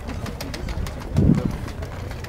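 Outdoor market background noise with faint clicks and a brief, low, muffled sound a little over a second in.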